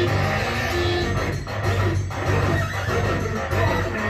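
A synth-punk band playing live: electronic synthesizers over a heavy, steady bass.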